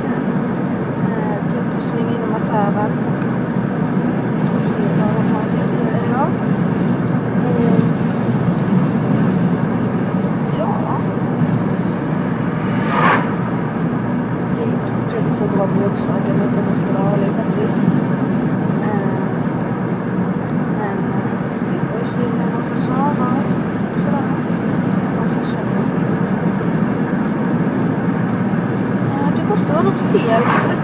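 Steady road and engine noise inside a moving car's cabin, with faint, indistinct voices over it. A single brief knock about 13 seconds in.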